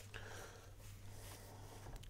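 Faint rustle of a glossy paper fold-out poster being opened and smoothed flat by hand, over a low steady hum.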